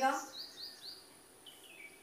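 Faint squeaks of a marker on a whiteboard while drawing: three short rising squeaks in quick succession, then a longer squeak that falls in pitch near the end.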